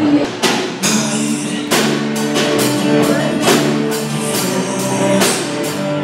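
Live band playing: a drum kit keeps a steady beat with cymbal hits under electric guitars and bass.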